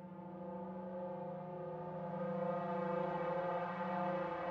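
A film-score drone: a sustained chord of several steady held tones, swelling louder about two seconds in.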